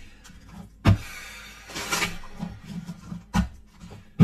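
A deck of tarot cards being handled and shuffled: a rustle of cards with a sharp knock about a second in and another past three seconds.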